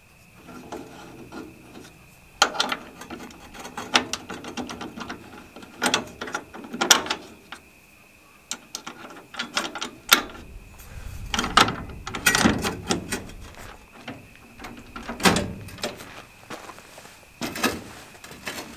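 Aluminium tailgate-ladder brackets and steel hitch pins being handled and worked by hand, giving an irregular run of sharp metallic clicks, clacks and rattles with short pauses between them.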